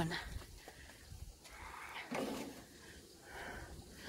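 Wind buffeting the microphone as a low rumble, with a brief faint voice-like sound about two seconds in.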